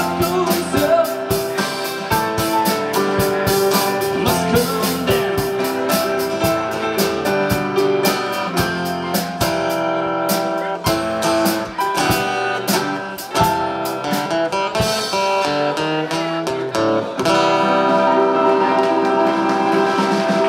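Live band playing an instrumental passage on acoustic guitar, drum kit and keyboard. The drum hits thin out past the middle, leaving mostly held chords near the end.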